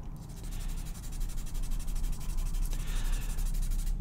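Paper blending stump rubbing over sanguine (red chalk) on paper in a steady, scratchy back-and-forth, spreading the chalk into a thin, transparent layer.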